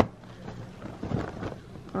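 Low handling noise: a hand rubbing and shifting a plastic-wrapped stack of paper plates close to the microphone, a dull rumble with faint rubbing sounds.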